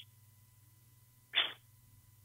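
Very quiet pause with a faint steady hum, broken about one and a half seconds in by a single short puff of breath-like noise.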